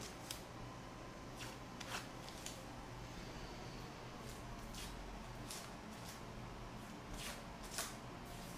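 Faint rustling and crinkling of blue painter's tape being handled and crumpled, a few short soft scratches spread through.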